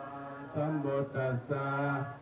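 Buddhist monk chanting Pali verses into a microphone in a low, even voice, each syllable held on a near-level note with short breaks between phrases.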